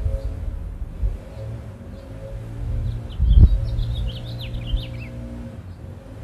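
A small bird chirping a quick run of short, falling notes between about three and five seconds in, over a steady low hum. A dull low thump comes about three and a half seconds in.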